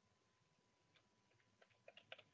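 Near silence with a faint steady tone, then from about a second in a quick run of faint clicks.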